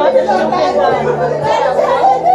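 Several voices chattering over one another, indistinct overlapping conversation.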